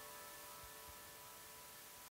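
Near silence: a faint steady hiss from the synthesizers and the Fostex 80 reel-to-reel tape, recorded with noise reduction switched off, under the last faint held tones of the song fading away.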